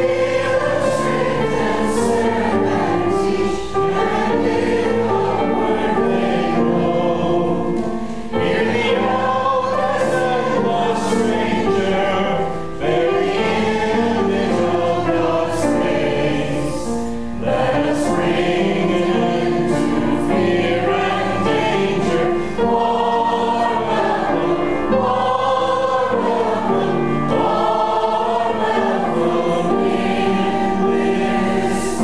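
Choir singing in long, sustained phrases, with brief dips between phrases every four or five seconds.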